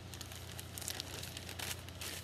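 A thin plastic shopping bag crinkling and rustling in irregular crackles as it is handled, over a steady low hum.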